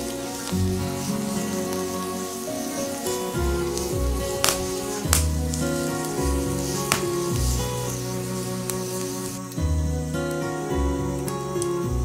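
Background music over the sizzling hiss of a green bamboo tube steaming on a wood fire as the water inside it boils off, with a few sharp pops between about four and seven seconds in.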